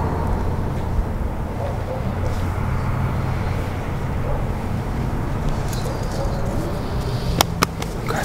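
A steady low engine hum, with two sharp clicks near the end.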